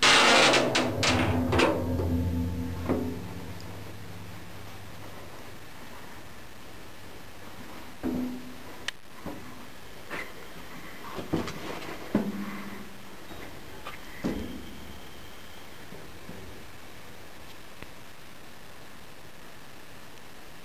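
Steel compartment door and metal panels clanging and knocking, the first loud clangs ringing on for a few seconds, then a few scattered knocks and thuds as someone steps out through the door onto the steel deck.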